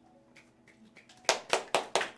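The song's final chord dies away, then an audience starts clapping a little over a second in, with sharp, distinct claps several times a second.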